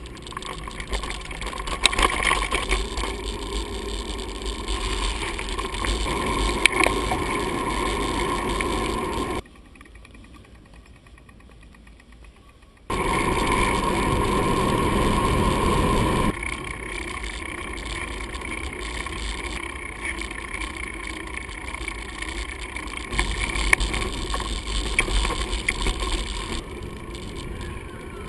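Mountain bike riding noise picked up by a GoPro on the bike: a steady rush of wind and tyre noise, with the bike rattling and knocking over a rough dirt track. The sound cuts off abruptly about a third of the way in to a quieter hiss for a few seconds, then comes back louder on a paved downhill.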